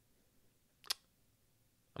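Near silence: room tone, broken by one short click about a second in.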